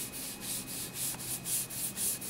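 Hand rubbing quick, regular strokes over the back of a sheet of paper laid on an inked stone slab, a dry papery swishing. This is the transfer stage of a monotype, pressing the paper down to pick up the ink left on the stone.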